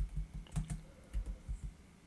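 Typing on a computer keyboard: a run of irregular keystrokes that dies away near the end.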